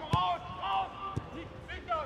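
A football is kicked twice, two dull thuds about a second apart, with distant shouts on the pitch.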